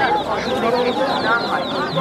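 A basket full of baby chickens peeping continuously, many short high chirps overlapping, with voices murmuring underneath.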